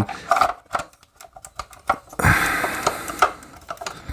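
Light clicks and knocks of a 3.5-inch Seagate hard drive's metal casing against a plastic Sabrent dual-bay docking station, then a scraping slide from about halfway as the drive is pushed down into the dock's slot.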